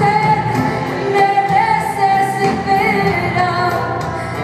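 Live bolero played by a band with guitars and percussion, with a woman singing over it.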